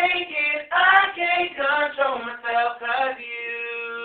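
Young men singing a cappella with no accompaniment: a run of short, quickly changing sung syllables in a high register, then a long held note from about three seconds in.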